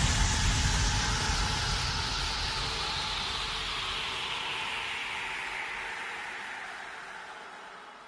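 The tail of a dubstep track after the beat has cut out: a hissing synthesized noise wash whose brightness slides steadily downward as it fades out over several seconds.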